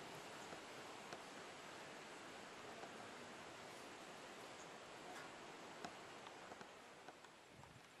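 Near silence: faint steady outdoor hiss with a few soft ticks, dropping away near the end.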